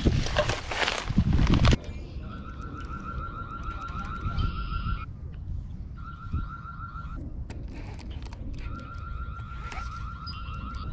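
Loud rustling and handling noise for the first couple of seconds. Then a high, rapidly pulsed trill comes three times, in bouts of one to three seconds, with short gaps between them.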